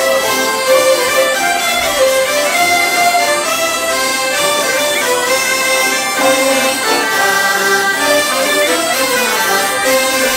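Traditional French folk dance music from a group of bagpipes, hurdy-gurdies and a clarinet playing together, dense and continuous.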